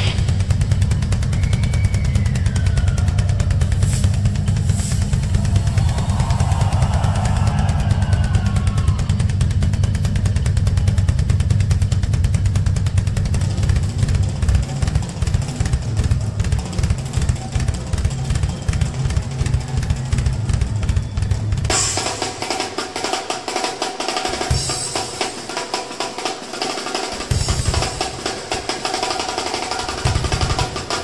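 Drum solo on a Pearl drum kit, played live and hard: a dense, heavy run of kick drum and toms, then about 22 seconds in the low end drops away and rapid snare and cymbal hits carry on.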